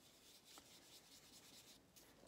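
Very faint rubbing of a foam finger dauber blending ink across card stock, barely above room tone.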